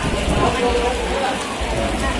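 Indistinct chatter of a seated crowd in a hall, over a steady noisy hiss.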